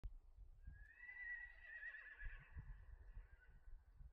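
A horse whinnying once, faintly: one long call of about three seconds, wavering in the middle and tailing off, over a low, uneven rumble.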